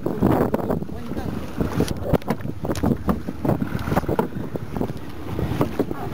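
Wind noise on the microphone over a small open boat at sea, broken by many irregular knocks and clatter from handling, with bursts of voices.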